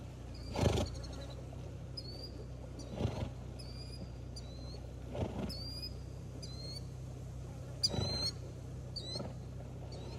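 A swimming horse blowing hard through its nostrils, four short rough snorts a couple of seconds apart, the first the loudest. A small bird chirps over it again and again in short, high, hooked calls.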